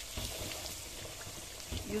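Hot palm oil sizzling as ground egusi (melon seed) fries in a pot, with soft knocks of a spatula stirring it.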